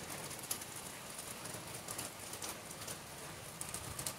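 Steady rain falling, a soft even hiss with scattered drops tapping on nearby surfaces.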